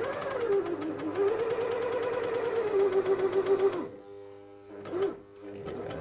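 Britannia CS4000+ coverstitch machine stitching Lycra at speed, a rapid rhythmic whirr that rises and falls in pitch as the sewing speed changes. It stops a little under four seconds in.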